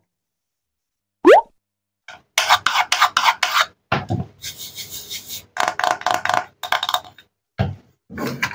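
A short rising tone about a second in, then a wooden toy cutting board and wooden toy knife rubbing and scraping against a tabletop as they are handled: a run of quick strokes, several a second, lasting some five seconds.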